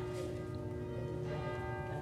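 Pre-service church music: several pitched tones held and overlapping, with no clear strikes.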